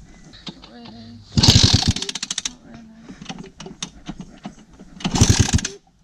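Yamaha YZ250 two-stroke single-cylinder engine kicked over twice with the spark plug out, each kick spinning the crank for about a second with a rapid pulsing rush of air from the plug hole. This is a spark and compression check on a bike that will not start.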